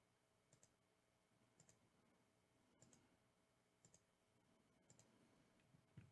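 Near silence broken by very faint computer mouse clicks, about one a second, each a quick double tick, as the randomizer is run again and again.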